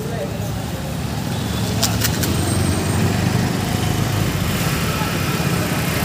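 Steady low rumble of a running engine or nearby street traffic, with a few short sharp clicks about two seconds in.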